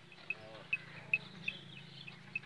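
Small birds chirping, short high chirps repeated a few times a second, over a low steady hum.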